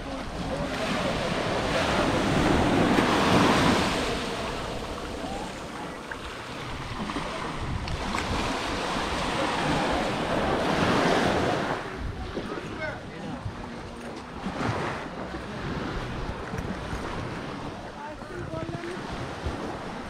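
Small waves washing up on a sandy shore, the wash swelling twice and falling back, with wind buffeting the microphone.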